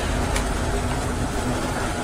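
Steady engine and road noise heard inside a motorhome's cab while it drives at low speed.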